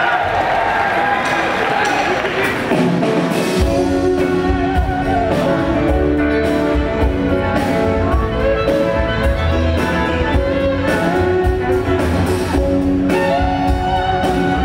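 A live band with banjo, electric guitar and drums starts the song: a crowd cheers for the first few seconds, then the full band comes in about four seconds in, with a heavy bass line under held melody notes.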